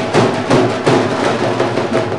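An ensemble of dhol drums played together in a fast, driving rhythm of dense, sharp strokes.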